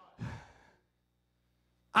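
A man exhaling into a handheld microphone: one short breathy sigh about a quarter of a second in, then a pause with only a faint low electrical hum.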